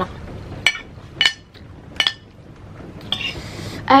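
A metal spoon clinking against a ceramic plate three times, short sharp ringing taps as noodles are scooped up.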